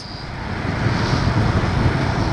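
Honda Shadow 750 V-twin engine running under way, mixed with wind and road noise on the camera microphone, getting louder over the first second.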